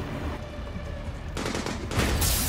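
A burst of rapid automatic gunfire in the second half, over a steady low rumble.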